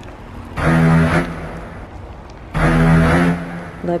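Two loud bursts of a steady, low-pitched motor drone, the first about half a second long and the second over a second, each starting and stopping abruptly.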